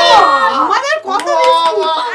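Several people, a child among them, laughing and calling out excitedly over one another, with a few sharp clicks about halfway through.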